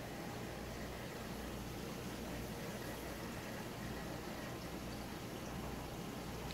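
Faint, steady hum and water circulation of a saltwater reef aquarium's pumps and filtration, with no separate events.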